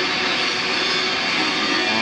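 Machinery running steadily: a constant whirring drone with faint fixed tones, unchanging in level.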